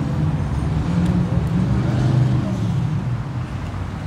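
Road traffic: a steady low engine hum.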